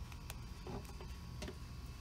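A few faint, scattered clicks and light taps of handling noise over a low steady hum.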